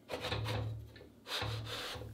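Wooden boom arm sliding in a close-fitting wooden socket block, wood rubbing on wood in two strokes, the second starting a little over a second in.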